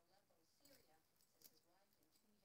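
Near silence, with faint distant voices and a faint click about a second and a half in.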